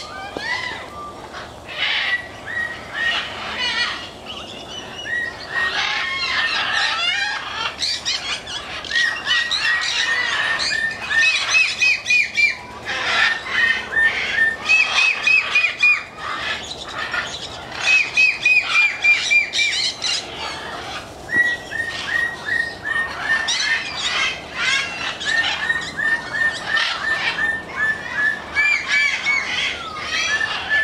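Many parrots calling at once: overlapping shrill squawks mixed with rapid runs of short repeated chirps.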